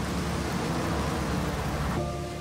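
Film sound of an old car's engine running steadily under a steady wash of rain noise.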